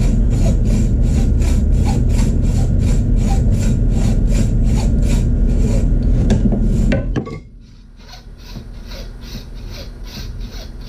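Hacksaw cutting into a wooden axe handle with steady back-and-forth strokes, about two and a half a second. A loud low rumble under the sawing cuts off abruptly about seven seconds in, and the strokes carry on more quietly.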